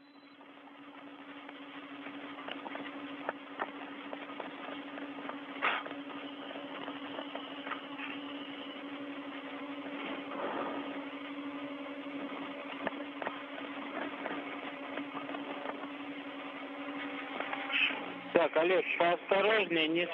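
Space-to-ground radio channel left open: a steady hiss and a low hum, with a few faint clicks. A voice starts speaking over the radio near the end.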